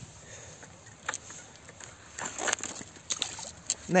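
Hooked fish splashing and thrashing in shallow water at the edge of the bank, a series of short irregular splashes.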